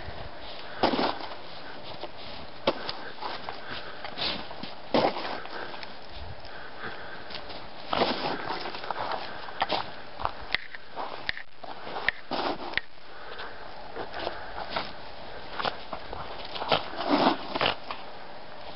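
A Jack Russell/rat terrier mix sniffing and scuffling in deep snow, with irregular crunches as it pounces and paws, in several louder clusters.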